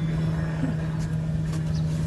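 A steady low hum over a low rumble, continuous and unchanging.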